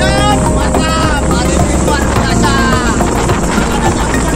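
A man's voice talking over steady low wind rumble on the microphone while riding along with a group of road cyclists.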